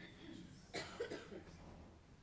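A person coughing, a short cluster of two or three quick coughs about a second in, faint over a low steady hum.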